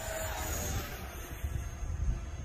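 Faint, steady whine of an E-flite F-15 Eagle electric ducted-fan RC jet flying at a distance, with wind rumbling on the microphone.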